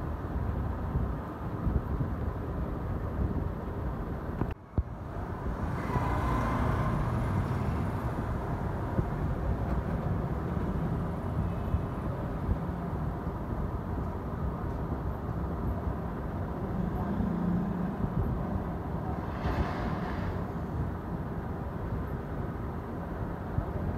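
Straight razor (shavette) scraping hair at the nape and around the ear, heard as brief raspy strokes about six seconds in and again near the end, with a few light clicks, over a steady low background rumble.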